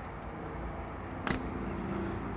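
Knipex electrical installation pliers stripping brittle old 1960 cloth-and-rubber-insulated house wire: one short sharp snip about two-thirds of the way in, over a low steady background.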